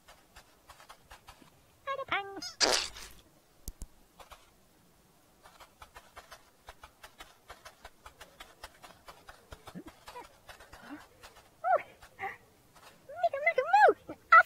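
A children's TV character making high, squeaky, pitch-bending nonsense vocal sounds about 2 s in and again near the end. Between them comes a run of light plastic clicks and rattles as a wheeled toy trundle is pushed along. A short loud noisy burst comes just before 3 s.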